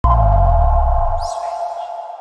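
Electronic logo sting: a deep bass hit and a sustained synth chord that start suddenly, the bass dropping out after about a second while the chord slowly fades, with a brief swoosh about a second in.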